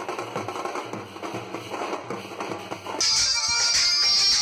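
A street band's drums beaten with sticks in a fast, steady rhythm, played live amid a crowd. About three seconds in it cuts off abruptly to louder recorded music.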